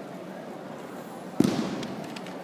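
A judoka thrown in a judo kata landing a breakfall on the tatami mat: one sharp slap-thud about one and a half seconds in, over the faint murmur of an arena hall.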